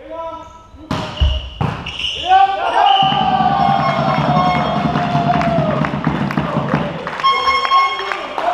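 A volleyball struck hard twice in an echoing sports hall, about a second in and again half a second later, followed by several players shouting and calling out over a rapid patter of clapping and stamping.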